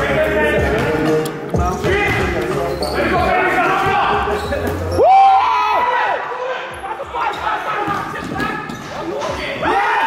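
A basketball dribbled and bouncing on the floor of a large sports hall, with a short squeak that rises and falls about five seconds in.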